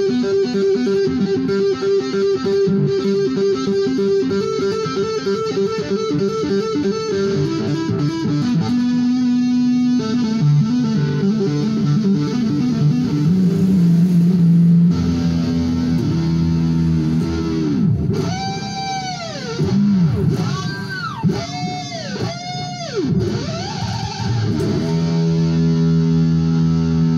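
Cort X-series electric guitar played through an amplifier: fast runs of rapid notes, then several swoops where the pitch slides up and back down, ending on a held note.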